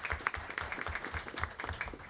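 Audience applauding, a scattering of hand claps that thins out and fades near the end.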